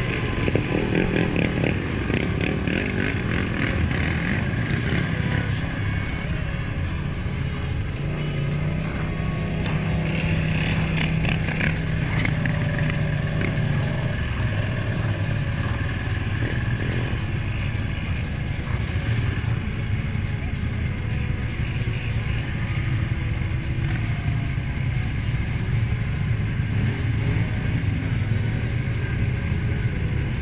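Suzuki King Quad 750 ATV's single-cylinder four-stroke engine running steadily while the quad is ridden along a trail.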